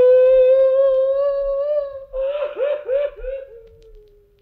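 A high-pitched cartoon kobold voice crying: one long held wail, then a few short falling sobs about halfway through that trail off into a faint whimper.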